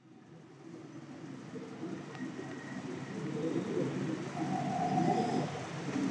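Low cooing calls, like those of pigeons or doves, fading in from silence and growing gradually louder.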